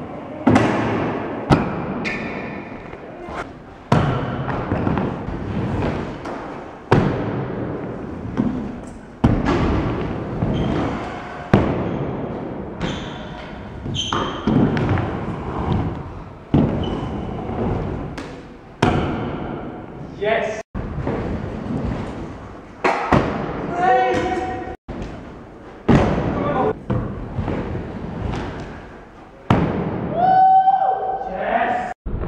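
Stunt scooter landings and wheel impacts on wooden ramps and a concrete floor: a sharp thud every two to three seconds, each echoing away in a large hall.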